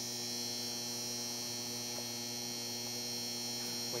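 A steady electrical hum with a buzzy edge and a thin high whine, holding the same pitch and level the whole time.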